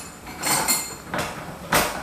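Metal knocking and clinking as a round aluminium plate is set in the jaws of an aluminium bench vise and the vise handle is worked: three short, sharp knocks about half a second apart, the first and last the loudest.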